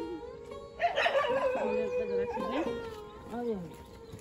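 A dog howling, with long swooping calls that rise and fall, over steady background music.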